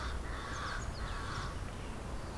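A bird calling for about the first second and a half, with smaller birds chirping higher up, over a low wind rumble.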